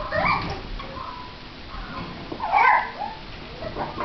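Shih tzu–bichon cross puppies whimpering and yipping in short pitched calls; the loudest comes about two and a half seconds in.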